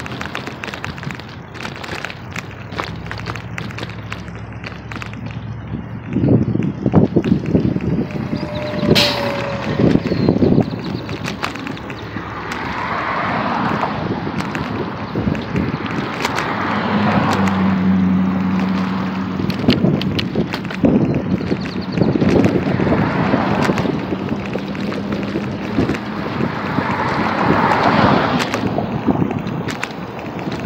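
Road traffic: cars passing several times, each rising and fading over a second or two, with wind buffeting the phone's microphone and handling knocks. A steady low hum joins in about halfway through.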